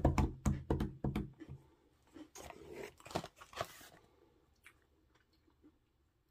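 Crunchy chewing of a dark chocolate butter biscuit, short crisp crunches strongest in the first second and a half. About two to four seconds in comes a rustle of the biscuit packaging being handled.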